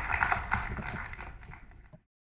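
Audience applauding, fading out over two seconds.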